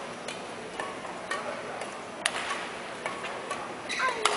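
A steady rhythm of sharp claps or clicks, about two a second and one louder than the rest a little past halfway, over the steady hum of an arena between rallies.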